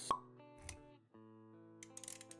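Intro music for an animated logo sequence: a sharp cartoon-style pop sound effect right at the start, a soft low thump about half a second later, then steady held musical notes.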